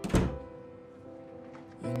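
A wooden front door shut once with a single loud thunk just after the start, over soft background music. A singer's voice comes in near the end.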